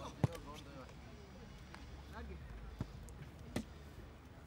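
Three sharp thumps of a football being kicked on a grass pitch: the loudest about a quarter second in, two weaker ones near the end. Distant voices call in the background.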